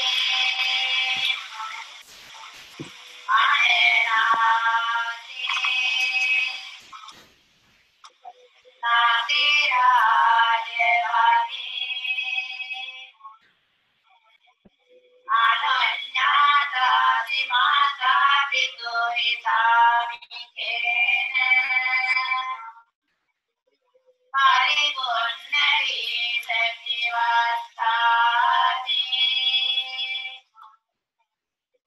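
Women's voices chanting in Pali during a Buddhist bhikkhuni ordination, in four long phrases separated by short pauses. This is the first half of the rite, in which nuns question the ordination candidate. The sound is thin, with no low end, as played back over a video call.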